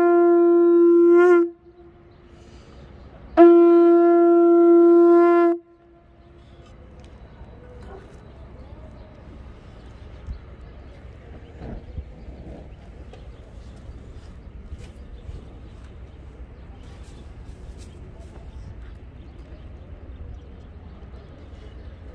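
Conch shell trumpet blown in two long blasts, each one steady held note with a bright row of overtones. The first is already sounding and ends about a second and a half in. The second runs from about three and a half to five and a half seconds in, after which only quiet outdoor background remains.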